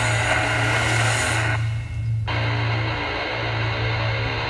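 Heavy death-doom metal music: dense, sustained distorted guitars over a steady low bass note. The guitars cut out briefly a little before halfway, leaving the low note ringing alone, then come back in.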